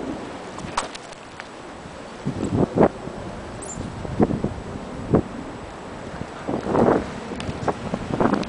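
Outdoor wind noise on the microphone, with a handful of short thumps and rustles from handling and movement, the strongest a little under 3 seconds in and near 4 and 5 seconds.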